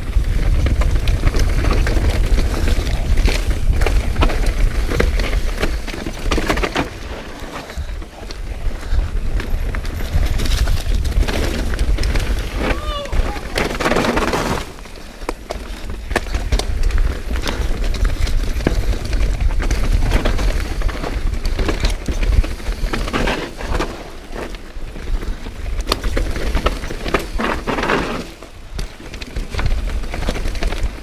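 Wind buffeting the camera microphone and the rattle and clatter of a full-suspension mountain bike descending a rough dirt trail at speed, with sharp knocks from the chain and frame over bumps. It eases off briefly a few times as the rider slows.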